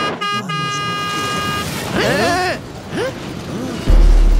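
Cartoon horn sound effect: a few quick toots, then a held blast lasting just over a second. Several short rising-and-falling sounds follow, and a loud deep boom comes in right at the end.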